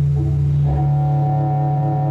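Bowed cello holding a steady low tone, with a higher sustained note joining in under a second in.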